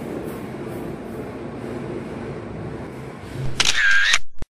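A steady low electrical hum from the room and the open fire alarm panel. Near the end comes a loud, high electronic alarm tone of about half a second, cut off abruptly.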